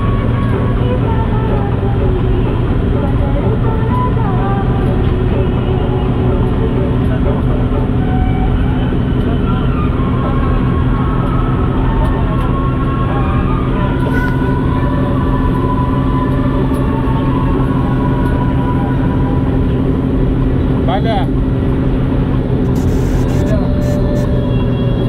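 Steady low engine and road drone of a vehicle driving at speed on a highway.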